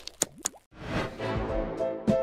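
Two short popping transition sound effects, then background music coming in under a second in and building with steady sustained notes.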